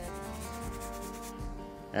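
Quiet background music with sustained chords, under a fine rapid rasping in the first part that fades out within the first second: dry rub grains, kosher salt, being sprinkled onto a raw brisket.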